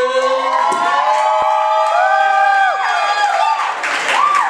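A small audience cheering and whooping, with several voices holding long, overlapping 'woo' calls at different pitches.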